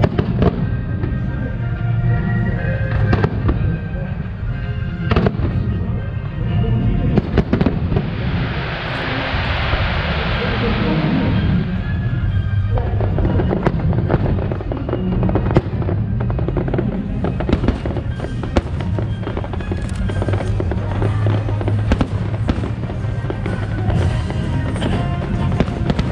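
Aerial firework shells bursting in a continual string of sharp bangs over a low rumble. A dense hiss swells and fades over several seconds about a third of the way in.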